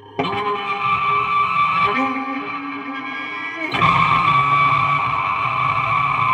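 Electrified brass cowbell with effect springs, played by hand and heard amplified through its pickup: a sudden hit about a quarter second in and another near the middle, each ringing on with a dense, sustained, guitar-like tone.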